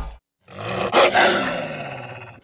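A single roar sound effect for the title card: it swells up after a brief silence, is loudest about a second in, then fades away over the next second and a half.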